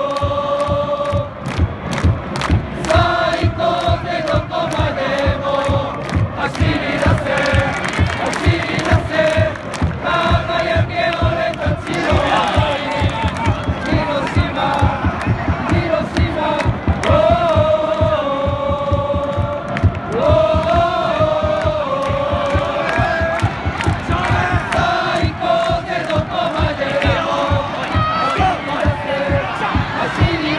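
Football supporters singing a chant in unison, a repeating melody carried by many voices over a steady drumbeat.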